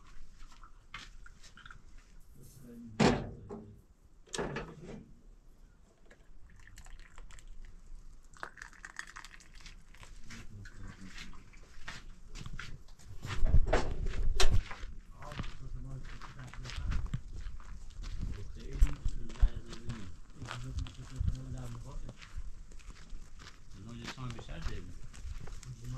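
Sharp knocks and clinks of a metal kettle and glass tea glasses being handled at a gas stove: two loud ones about three and four and a half seconds in, and a louder cluster around the middle. People talk in the background.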